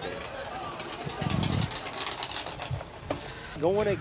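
Nissan Silvia drift cars' engines heard faintly through the event broadcast, with a short, louder burst a little over a second in.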